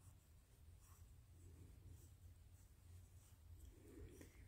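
Near silence: faint soft rustling and scraping of yarn and a crochet hook as stitches are worked, over a low hum.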